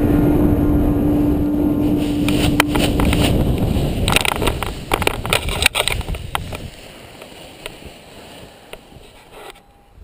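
Wind rushing over the microphone of a paraglider pilot's harness camera during the final glide to landing, then a cluster of knocks and rustles from about four seconds in as the pilot touches down on the grass, after which it goes much quieter. A held music note fades out under the wind in the first three seconds.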